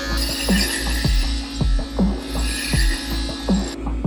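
Background electronic music with a steady beat, about two bass thumps a second, over a high hiss that cuts off suddenly near the end.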